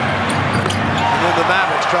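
Arena crowd cheering loudly after a blocked shot, over the sounds of live basketball play on a hardwood court: sneaker squeaks and a ball bouncing.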